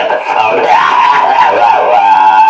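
Hohner Blues Harp MS diatonic harmonica in the key of B, played through a Shure Green Bullet microphone into a small guitar amplifier. Its notes bend and slide up and down in pitch.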